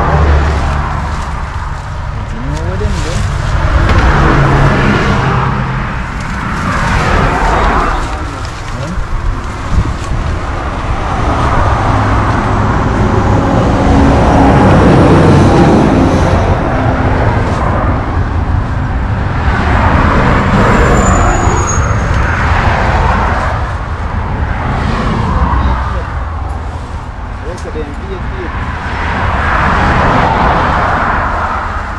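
Road traffic: a string of cars passing one after another, each swelling and fading over a few seconds, over a steady low rumble.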